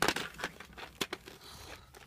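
Rustling and handling noise of plastic toys being moved about on a bedsheet, with a few sharp clicks: one at the start, one about half a second in and two about a second in.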